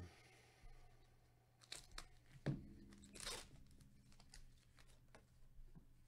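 Plastic wrapper of a basketball card pack being torn and crinkled open, faint: a few sharp crackles, the loudest about two and a half seconds in, then a short rip.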